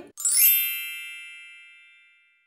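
Bright chime sound effect: a quick upward shimmer, then a bell-like ring of several tones that fades away over about two seconds.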